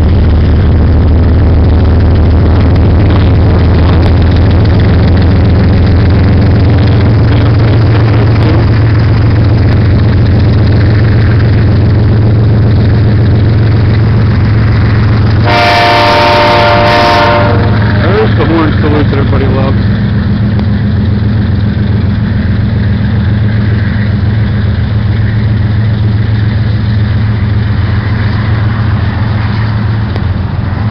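BNSF diesel-electric freight locomotives passing close, their engines a loud, steady, low drone. About fifteen seconds in, a locomotive air horn sounds a chord in two blasts, the second short, lasting about two seconds in all. Near the end the engine drone eases a little as the units move away.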